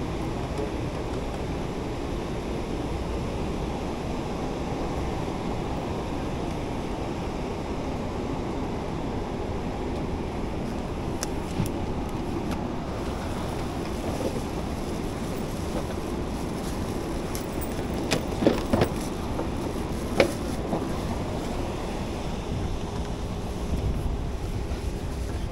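Steady rushing cabin air-conditioning noise inside a parked Boeing 777-300ER during boarding, with a few sharp knocks about three-quarters of the way in.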